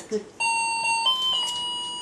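Toy electronic keyboard sounding two held notes, the second a little higher, as a puppy's body presses the keys. Each note comes in suddenly, holds steady and fades slowly.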